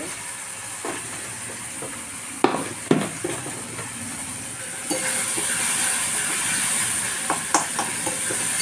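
Chopped tomato and green chilli frying in oil in a steel kadhai, with a steady sizzle that gets louder about five seconds in. A few sharp clinks of a steel spoon against the pan come through it.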